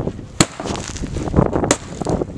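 A gift-wrapped cardboard box being struck and ripped apart by hand. A sharp crack comes about half a second in and another near the end, with duller knocks and rustling of cardboard and paper between.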